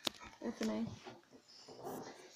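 A sharp click at the start, then soft, short vocal sounds from a small chihuahua-pug mix dog being petted, with a faint hiss near the end.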